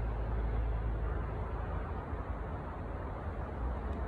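Steady outdoor background noise: a low rumble with a faint hiss over it, easing slightly in the second half.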